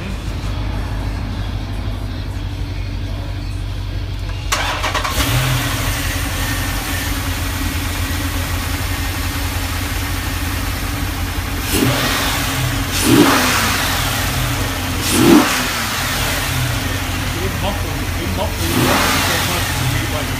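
Chrysler 300 SRT's HEMI V8, breathing through a Mopar cold air intake, running at idle. It is a steady low rumble, with a few short, louder rises in revs in the second half.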